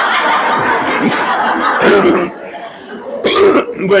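An audience laughing together, loud for about two seconds and then dying down, with a short loud burst of laughter near the end.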